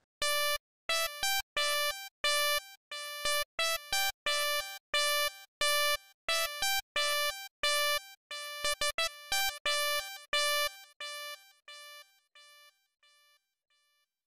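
Synth lead from FL Studio Mobile's SuperSaw 'Breathing' preset playing a short-note melody alone: mostly one repeated note with occasional higher notes. The notes grow quieter and die away in the last few seconds.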